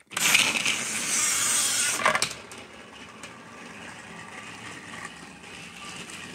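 Battery-powered toy Thomas engine switched on and running on plastic track: a loud rattling whir while it is right by the microphone, dropping about two seconds in to a quieter steady whir as it runs off along the track.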